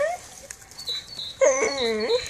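Jack Russell terrier giving a drawn-out, high-pitched whining bark about a second and a half in, with faint bird chirps behind it.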